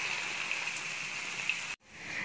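Breadcrumb-coated onion rings deep-frying in hot oil, a steady sizzle; it cuts out abruptly near the end.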